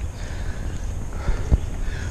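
Footsteps of someone walking along a grassy trail, with low rumbling handling noise from a moving first-person camera and a sharper thump about one and a half seconds in.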